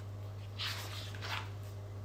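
A page of a paperback picture book being turned, two soft papery rustles, over a steady low hum.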